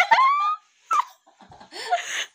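A woman laughing hard. The laugh rises in pitch into a high squeal over the first half-second, then breaks into a few short bursts with gasping gaps between them.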